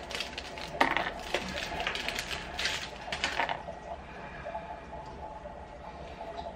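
Plastic snack wrapper crinkling in short crackly bursts as a chocolate biscuit bar is unwrapped, dying down after about three and a half seconds.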